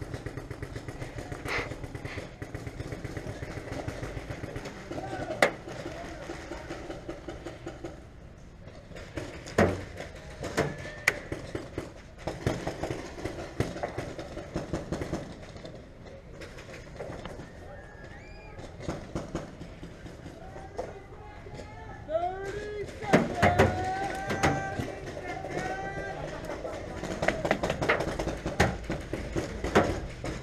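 Paintball markers firing across the field: sharp pops at irregular intervals, single and in short runs. Distant shouting joins in from about the middle of the stretch.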